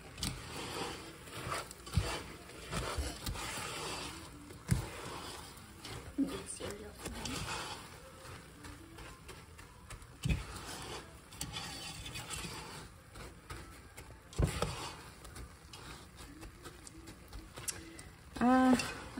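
Silicone spatula stirring and scraping crisp rice cereal through sticky melted marshmallow in a saucepan, an uneven crunchy scraping with a few sharper knocks of the spatula against the pan.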